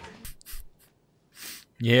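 Speech only: soft, breathy voice sounds, a brief near-silent pause, then a man's loud, drawn-out "Yeah" near the end.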